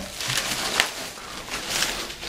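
Thin plastic bag rustling and crinkling as it is pulled off a subwoofer cabinet, with louder crinkles about a second in and near the end.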